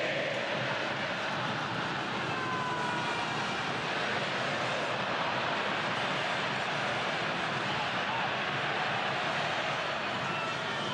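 Football stadium crowd noise: a steady roar of many voices, with a few faint short whistles over it.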